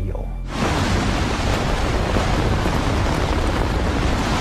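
Steady rush of blizzard wind used as a sound effect, cutting in suddenly about half a second in and running at an even, loud level.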